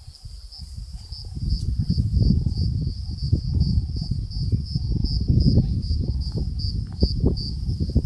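High-pitched insect chorus trilling steadily, pulsing about three times a second, over a louder, uneven low rumble that grows about a second and a half in.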